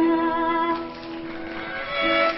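Background music: a violin holds one long note that softens about halfway through, over quieter accompanying notes.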